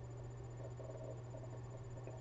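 Quiet room tone in a small room: a steady low hum under a faint hiss.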